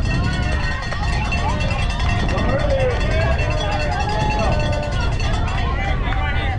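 Several young voices yelling and chanting at once, with pitches wavering and some notes held, over a steady low rumble.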